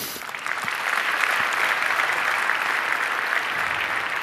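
Audience applauding in a large hall, the clapping swelling up over the first half second and then holding steady.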